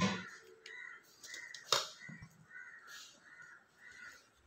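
A crow cawing in a quick, evenly repeated series of short calls, with a clatter right at the start and a sharp tap a little under two seconds in.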